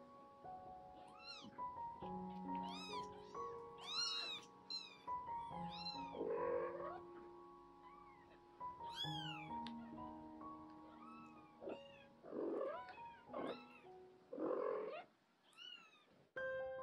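A very young kitten mewing over and over in short, high calls that rise and fall, with a few lower, louder cries among them. Soft piano music plays underneath.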